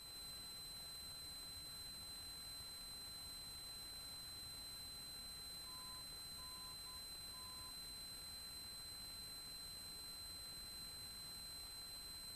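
A near-quiet aircraft audio feed with a faint steady hiss. About six seconds in come four short beeps of one mid-pitched tone in a long-long-short-long pattern, like the Morse identifier of a radio navigation beacon heard through the avionics.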